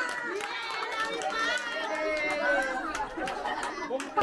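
A group of children chattering and calling out at once, many overlapping voices.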